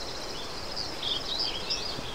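Small birds chirping: many short, high-pitched calls over a steady background hiss.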